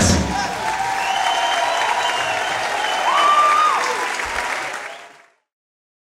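Concert audience applauding and cheering, with a few shouts over the clapping, after the band's last note. The sound fades out about five seconds in.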